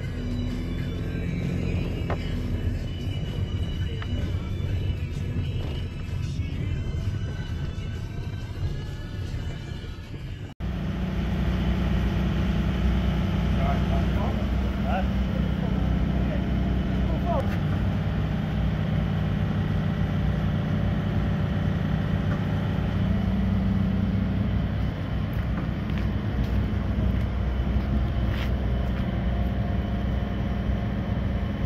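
Background music for about the first ten seconds. Then, after a sudden cut, a steady low hum from the truck's engine running to drive the hydraulics of a lorry-mounted knuckle-boom crane as it lifts a large enclosure off the trailer.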